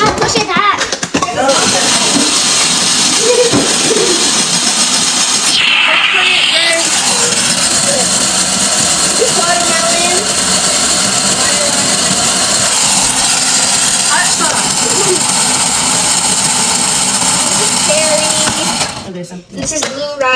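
Electric snow cone machine running and shaving ice: a loud, steady grinding motor noise that starts about a second and a half in and stops shortly before the end, with faint voices under it.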